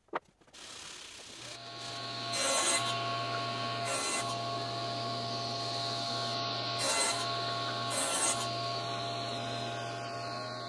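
Table saw starting up and running steadily, with four short louder bursts as wood is fed through the blade.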